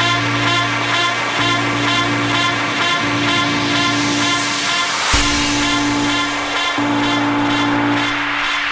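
Electronic dance music with a steady bass line and beat. A rising noise sweep builds up and breaks into a hit about five seconds in.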